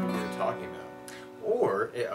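Acoustic guitar notes struck at the start and left to ring, fading over about a second and a half.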